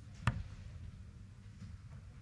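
A single steel-tip dart striking a Winmau Blade 6 bristle dartboard: one sharp thud about a quarter second in, over faint low room tone.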